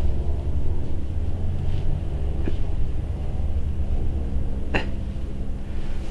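A steady low machine hum with a few faint, short clicks, about two, two and a half and five seconds in.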